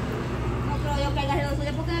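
Women talking softly in Spanish in the background, over a steady low rumble.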